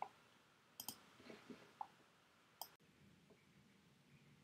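Faint computer mouse clicks: a click at the start, a quick pair about a second in, then single clicks near two and near three seconds, with near silence between.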